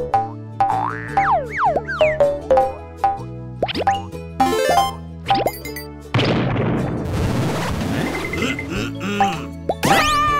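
Bouncy children's cartoon background music with a run of quick springy boing and plop effects, short pitch glides up and down several times a second. About six seconds in, a sustained rushing noise swells under the music.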